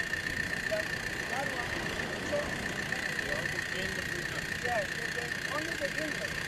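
Steady mechanical hum with a constant high whine from a mobile water filtration unit running, under the murmur of a crowd talking.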